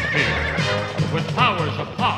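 Animated-series theme music with singing, over which a horse whinnies.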